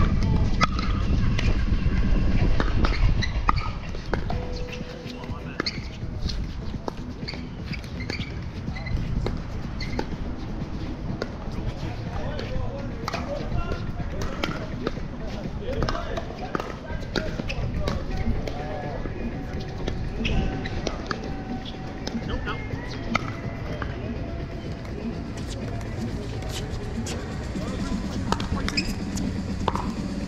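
Pickleball rallies: scattered sharp pops of paddles striking the plastic ball, coming in irregular runs. Under them is a low rumble that is loudest in the first few seconds.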